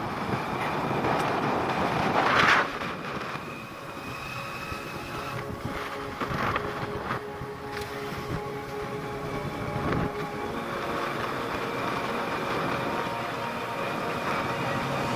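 Two-wheeler engine running at road speed, with wind rushing over the microphone and a brief louder surge about two and a half seconds in.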